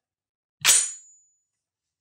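Winchester Model 1911 self-loading shotgun's action slamming shut when the bolt-release button is pushed: a single loud metallic clack about half a second in, with a brief high ring.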